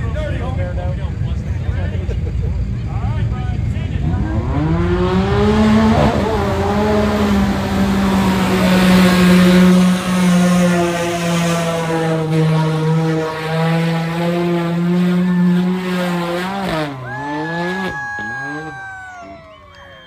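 A side-by-side's engine revving up and held at high revs as it pulls through a deep mud hole, the revs dipping twice and dying away near the end.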